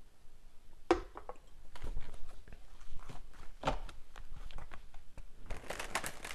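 Irregular crackling and rustling of something being handled close to the microphone, opening with a sharp click about a second in.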